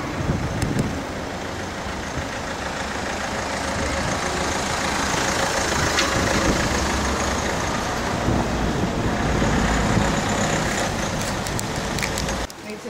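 Heavy road-vehicle engine and road noise close by, a low, steady rumble that builds over the first few seconds and stays loud.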